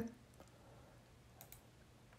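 Near silence with a few faint computer mouse clicks: one about half a second in and two in quick succession about a second and a half in.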